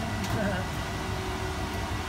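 Indesit front-loading washing machine running with a steady low hum and a faint steady whine, its drum turning slowly through heavy suds: suds lock is holding it back from spinning up.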